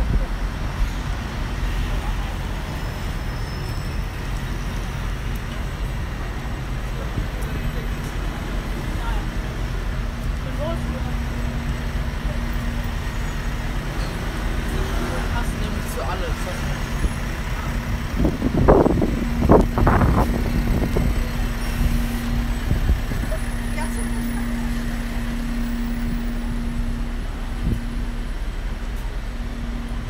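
City street traffic: a steady low rumble of passing cars and buses, with a steady hum underneath from about a quarter of the way in. A couple of louder surges come about two-thirds of the way through.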